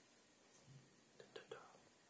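Near silence: room tone, with a few faint, short soft sounds about a second and a half in.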